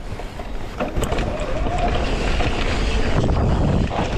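Electric mountain bike rolling fast down a dirt trail: wind rushing over the camera microphone with a low rumble and rattle from the tyres and bike, louder from about a second in.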